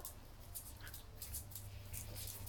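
Faint, scattered clicks and scratches of small dogs' claws on a tile floor as they shift about and rise onto their hind legs, over a low steady hum.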